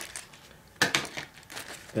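Clear plastic zip bag of electronic components crinkling as it is handled: quiet at first, then a few short crinkles about a second in and again near the end.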